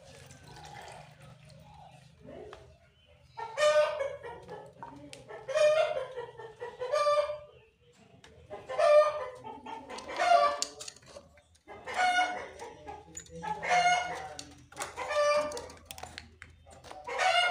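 Caged francolin (teetar) calling: a series of loud, harsh, pitched calls that begins a few seconds in and repeats about every one and a half seconds.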